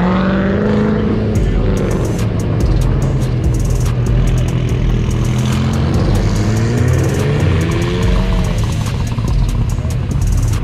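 Sports cars driving slowly past one after another, engines running loud with revs rising and falling, notably about a second in and again near the end.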